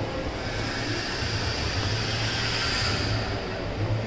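Steady background noise with a low rumble and a hiss that swells slightly around the middle, with no distinct event standing out.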